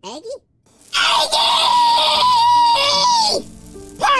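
A cartoon child's loud scream, held on one high pitch for about two seconds and dropping away near the end.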